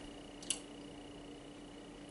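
A pause with a faint steady hum and a single short, sharp click about half a second in.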